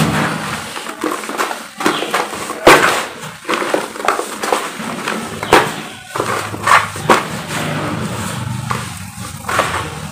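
Hands crushing and crumbling dry, gritty cement clumps in a bowl: irregular crunches with the hiss of falling powder, the loudest crunch about three seconds in.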